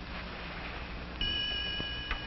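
Soundtrack hiss, then about a second in a high chord of steady tones comes in and holds: a magic-wand sound cue in an old film soundtrack.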